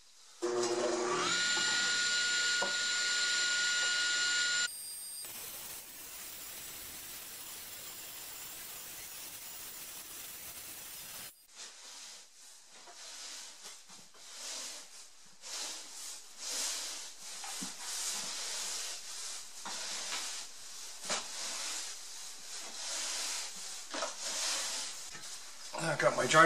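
Table saw motor switched on, its whine rising briefly in pitch and then holding steady at full speed for a few seconds. A steady hiss follows, then an irregular series of swishes, fitting a broom sweeping sawdust on a concrete floor.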